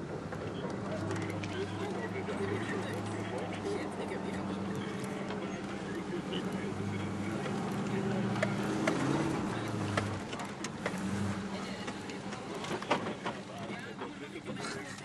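A four-wheel-drive engine idling with a steady low hum. Scattered sharp clicks and knocks come in the second half.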